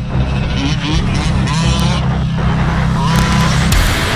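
Losi 5ive-T 1/5-scale RC truck's two-stroke gas engine running, with a few short rising revs, stopping abruptly near the end.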